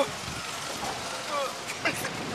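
Steady rush of wind over a microphone on a moving amusement ride, with a rider's faint falling moans.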